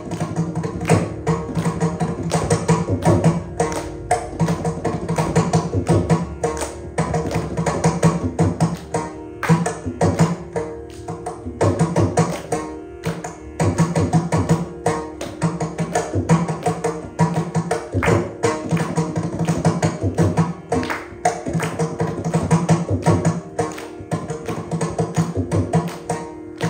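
Mridangam played solo in adi tala, a tani avartanam: fast, dense strokes with recurring groups of deep bass strokes, over a steady drone.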